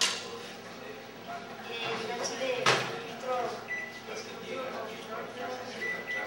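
Low, indistinct voices talking in the room, with a sharp click at the very start and a louder single knock a little under three seconds in.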